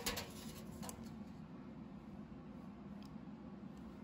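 Quiet room tone: a faint steady low hum with a couple of light clicks.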